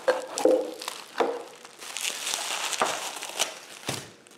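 Bubble wrap crinkling and rustling as a wrapped package is handled and pulled out of a cardboard box. The crackles come in irregular sharp clicks with a few short squeaks, louder in the first half and dying down near the end.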